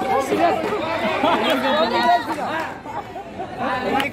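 Several spectators talking and calling out over one another close to the microphone, the chatter dipping briefly about three seconds in.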